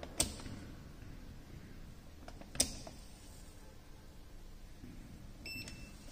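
Two sharp clicks about two and a half seconds apart, from handling the bench equipment, then a short electronic beep near the end, typical of a digital multimeter.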